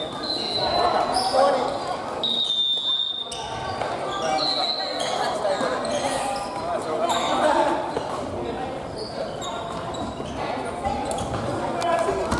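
Busy sports hall: many voices chattering at once in a large echoing room, with short high squeaks of sneakers on the wooden floor several times and scattered knocks from play on the courts.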